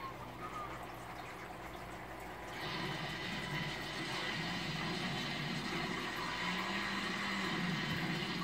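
Film soundtrack from a television: a steady rushing noise like a car driving through snow, louder from about two and a half seconds in.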